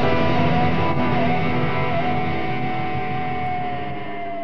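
A rock band's closing chord, with electric guitar, held and slowly fading out.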